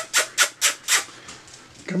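A quick run of short, sharp clicks, about four a second, made to call a puppy over, stopping about a second in.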